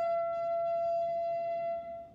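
Unaccompanied saxophone holding one long high note that fades away near the end.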